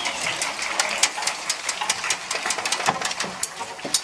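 Audience applauding after the aria, with many separate hand claps standing out at an uneven pace.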